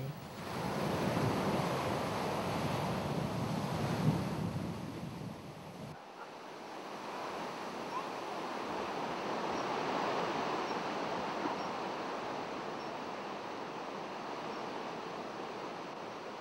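Sea surf breaking and washing onto a pebble beach, a steady rush of waves. About six seconds in it cuts abruptly to a thinner, steadier outdoor hiss with faint high peeps repeating about once a second.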